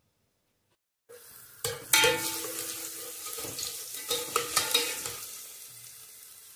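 Minced garlic sizzling in hot oil in an enamel pot, with a utensil stirring and clicking against the pot. It starts abruptly about a second in and is loudest just before the two-second mark.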